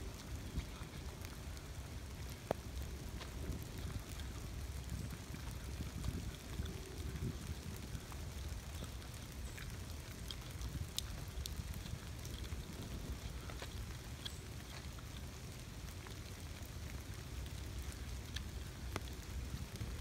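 Steady rain falling, an even hiss over a low rumble, with scattered sharp ticks of single drops.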